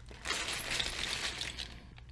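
Loose Lego bricks and plates clattering and clinking against each other inside a plastic bag as the bag is shaken and handled.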